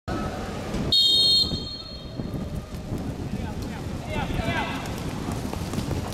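Referee's pea whistle blown once about a second in, a short, loud, steady high blast of about half a second that signals the kick-off. Players' voices follow over a steady low rumble.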